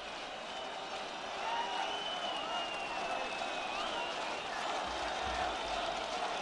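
Stadium crowd noise with scattered clapping, growing a little louder about a second and a half in. A long, high whistle sounds over the crowd through the middle of it.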